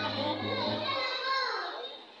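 A group of children singing together, with some held notes, the voices dying down near the end.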